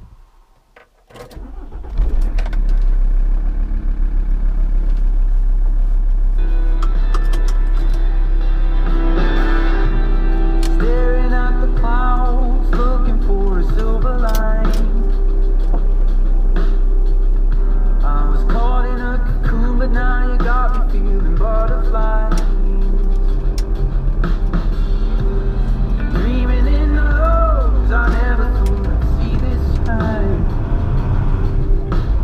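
A camper van's engine cranks and starts about two seconds in, then runs steadily. From about six seconds in, a song with a singing voice plays over the engine.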